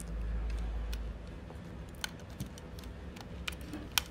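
Small, irregular plastic clicks and handling noise from a Hasbro Battle Blade Bumblebee Deluxe Class Transformers figure as its doors are worked open by hand, with a low rumble of handling in about the first second.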